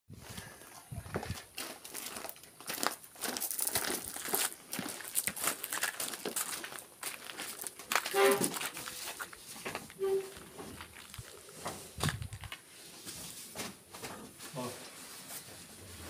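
Scattered rustling, crinkling and knocks from a packaged washing machine being handled and carried on a man's back, with footsteps and brief indistinct voices around the middle.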